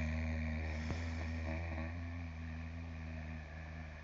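A low ringing tone, struck sharply just before and then held with several steady overtones. It slowly fades and stops near the end.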